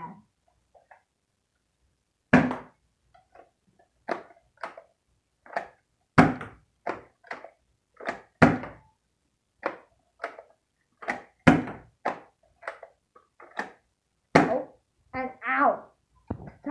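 Stock Eon Pro spring-powered foam-dart blaster being primed and fired over and over, a sharp clack every half second to a second, some much louder than others.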